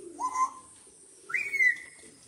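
Two short whistled calls. Each rises in pitch and then holds, and the second is higher and longer than the first.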